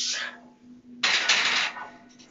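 A man breathing hard through sets of heavy barbell bench-press reps off the pins: a grunted exhale fades out at the start, then a long hissing breath lasts most of a second from about a second in. A faint steady hum runs underneath.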